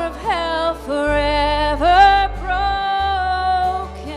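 Live church worship band: a woman sings long held notes, sliding up into several of them, over acoustic guitar, violin and drums, with low bass notes that change about a second in and again near the end.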